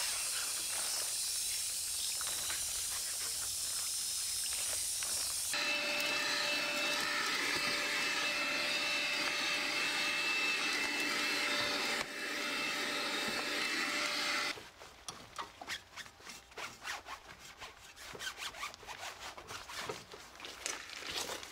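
Hose spray nozzle hissing for about five seconds, then a Makita cordless stick vacuum running steadily with a high whine for about nine seconds. Near the end come irregular soft rustles and clicks of a cloth wiping around the car's fuel-filler lid.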